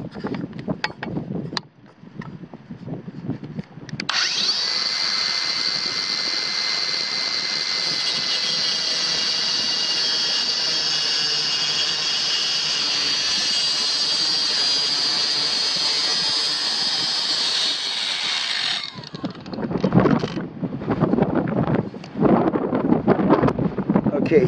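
Kobalt 24-volt brushless 4-inch cordless circular saw starting about four seconds in and running with a steady high-pitched whine as it cross-cuts a wooden board, for about fifteen seconds, then stopping suddenly. Irregular handling knocks and rustle follow.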